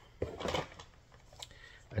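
Plastic cassette cases being handled: a short rustle and light clatter, then a single sharp click about a second and a half in.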